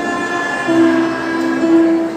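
A children's ensemble of pianikas (keyboard melodicas) playing held notes together in harmony, the tune stepping from one note to the next.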